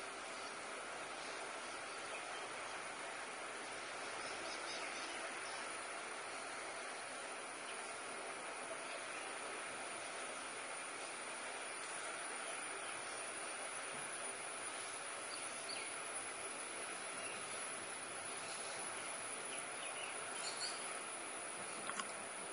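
Steady forest ambience: an even drone of insects with a few faint, brief bird calls.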